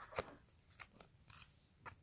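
Near silence broken by a few faint clicks and rustles of a trading card and its paper packet being handled in the fingers.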